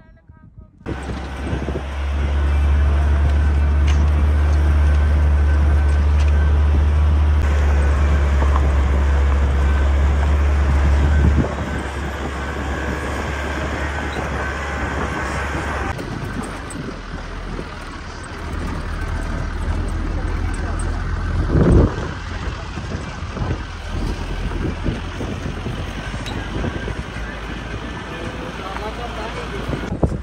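Car driving slowly along a rough dirt track with a window open: steady road and engine noise with heavy wind rumble on the microphone, strongest in the first half. A single sharp knock about 22 seconds in, like the car jolting over a bump.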